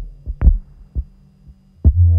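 Buchla Red Panel modular synthesizer playing sparse, low percussive thumps over a faint low hum, the loudest thump about half a second in. A loud low tone comes back in near the end.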